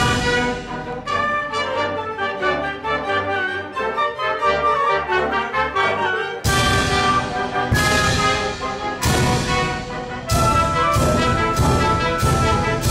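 Orchestra playing a classical piece under a conductor: a softer, busier passage first, then loud accented full-orchestra chords from about six seconds in, coming closer together near the end.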